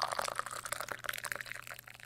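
A drink being poured into a glass, heard as a dense fizzing crackle of liquid, over a faint steady low hum.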